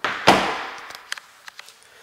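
Interior closet door pushed shut with one thud, followed about a second later by a few faint clicks.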